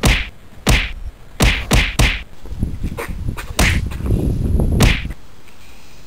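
Sharp whacks of punches and strikes in a staged fistfight, about eight of them coming irregularly, with a rougher low noise under the hits in the middle of the stretch.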